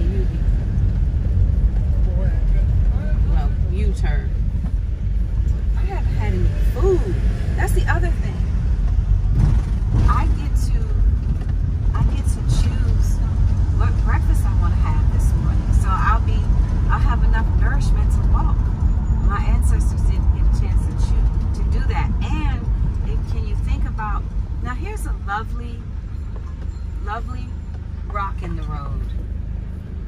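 Cabin noise of a Hyundai vehicle on the move: a steady low rumble of engine and tyres, with voices talking over it off and on. The rumble eases off over the last several seconds.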